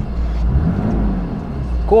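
Mercedes-Benz 3-litre diesel engine idling, heard from inside the car's cabin as a steady low rumble.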